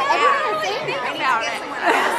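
Speech only: women's voices talking, with chatter around them.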